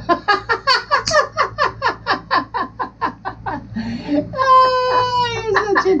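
Laughter in a quick, even run of short bursts, about five a second, then a long high wailing note held for about a second.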